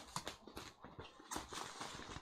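Bubble wrap being pulled off a package by hand: faint, irregular crinkles and soft clicks.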